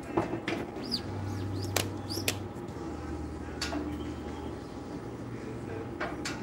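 Knocks and clacks of a manual screen-printing press being worked by hand, as the screen frame is lifted and the press carousel turned, with a few short squeaks.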